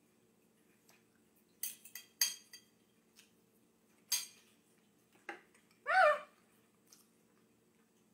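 A metal fork clinking and scraping a few times against a ceramic plate while a mouthful of pie is eaten, then a brief appreciative "ah" about six seconds in, all over a faint steady hum.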